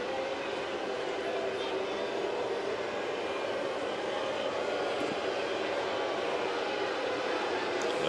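Ballpark crowd murmuring, a steady even hum of many voices with no cheering or sharp sounds.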